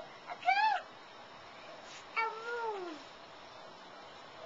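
A young child's wordless, high-pitched vocal calls: a brief squeal about half a second in, then a longer call that slides downward in pitch about two seconds in.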